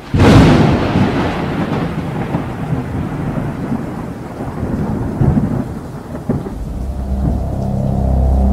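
A thunderstorm sound effect: a sudden thunderclap at the start rolling off into rumbling thunder with rain hiss. Near the end a low sustained music chord swells in under it.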